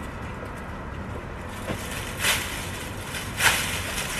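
Long-handled loppers cutting through thick zinnia stalks: two sharp snips in the second half, a little over a second apart, over a steady low rumble.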